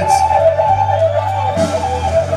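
Rock band playing live with no vocals: held electric guitar notes step slowly up and down over a steady low bass note.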